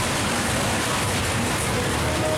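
Loud, steady fairground din: a dense wash of noise with faint short tones coming and going in it.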